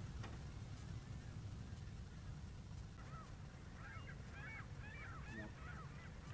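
Faint honking of a flock of geese: a quick run of short calls starting about halfway through, over a low steady rumble.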